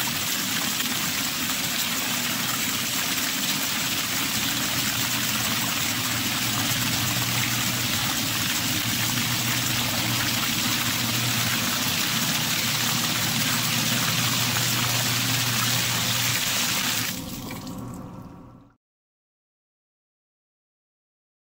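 A Zoeller M98 and a SmartBot sump pump running together, pumping out two basins: a steady rush of water with a low, steady motor hum. Near the end, as the basins run nearly dry, the rush thins out and then cuts off abruptly.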